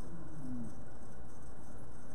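A pause in speech: steady low hum and hiss of room noise through the microphone, with a faint short low tone about half a second in.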